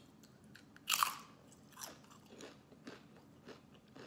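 A tortilla chip dipped in guacamole is bitten with one loud crunch about a second in, then chewed with several softer crunches.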